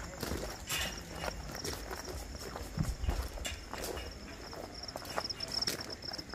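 Footsteps on a stony dirt path, an irregular run of short scuffs and crunches, over a steady high chirring of crickets.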